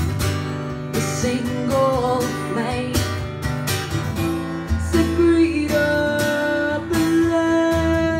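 Acoustic guitar strummed in a steady rhythm, with a woman singing long, held notes over it, most clearly in the second half.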